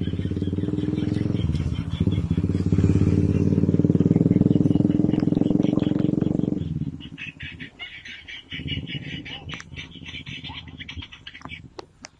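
A motor engine running steadily with a low hum, louder in the middle, that cuts off about seven seconds in. After it stops, a fainter rapid high chirping remains.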